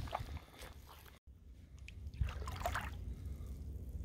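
Faint sloshing and squelching of feet wading through shallow water over soft, sticky mud, under a steady low rumble. The sound drops out for a moment about a second in.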